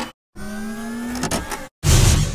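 Intro sound effects: a small motor whine, rising slightly in pitch for about a second, then a few clicks, a brief silence and a loud sudden hit at the very end.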